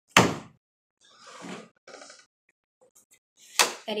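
A sharp thump just after the start, the loudest sound, dying away within half a second. Softer hissy noises follow, and a second sharp thump comes near the end.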